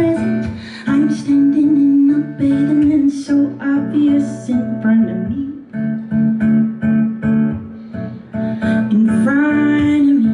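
Live song with acoustic guitar strumming and a woman singing long held notes with no clear words.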